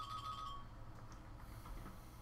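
A steady, high electronic tone that cuts off about half a second in, leaving a faint low hum.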